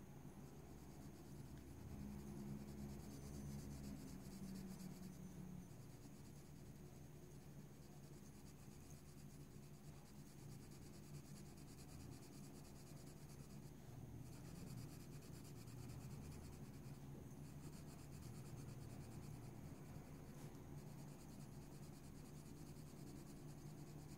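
Faint scratching of a colored pencil shading on paper, in short back-and-forth strokes, over a low steady hum.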